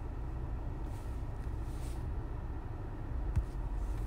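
Steady low rumble of background noise, with faint soft breathy sounds and one light click about three seconds in.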